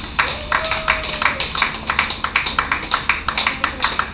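Scattered applause from a small club crowd: a handful of people clapping unevenly, about five claps a second, right after a song ends.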